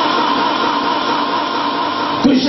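A man's voice holding one long chanted note through a public-address loudspeaker.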